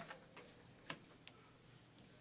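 Near silence: quiet room tone with a few faint, uneven ticks and clicks from pens and papers being handled at a table.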